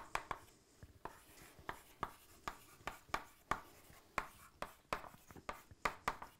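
Chalk on a chalkboard as words are written: an irregular run of short taps and scrapes, a few a second, as each stroke of the letters is made.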